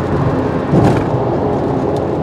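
Steady road and wind noise heard from inside a car at highway speed, with a brief louder swell a little under a second in while a semi-trailer truck runs alongside.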